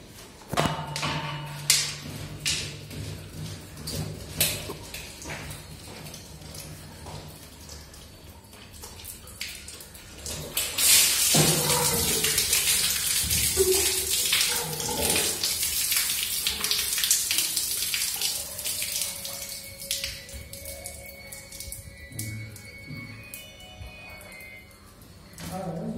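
Water pouring and splashing out of a reverse-osmosis plant's plastic cartridge filter housing as it is emptied, a loud even rush starting about eleven seconds in and lasting some eight seconds. Before it come scattered knocks and clicks of the housing being handled over a low steady hum.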